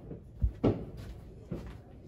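A few knocks and thumps: a low thump about half a second in, a louder knock right after it, and a softer knock about a second and a half in.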